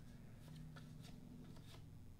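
Faint flicking and sliding of cardboard trading cards being thumbed through by hand, a few light ticks, over a low steady hum.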